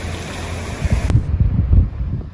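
Surf washing in over a pebble beach, a steady hiss of foaming water, with wind on the microphone. About a second in it cuts off abruptly, leaving gusty wind rumble on the microphone.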